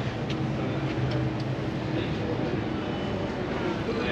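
Street ambience dominated by a steady low mechanical hum, typical of a nearby vehicle engine running, with a few faint ticks.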